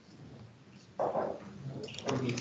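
A short voice-like sound about a second in, after a faint start. Computer keyboard typing begins near the end.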